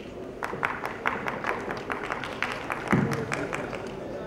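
Scattered hand clapping from a few people, a few sharp claps a second, lasting about three seconds.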